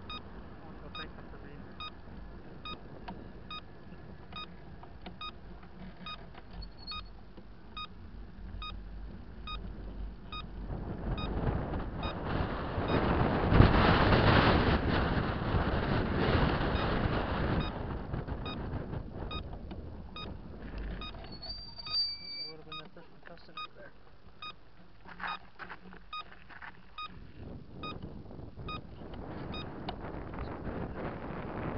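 Road and wind noise from a moving vehicle. A louder rush swells up through the middle and fades away. A faint, even ticking runs underneath at about one and a half ticks a second.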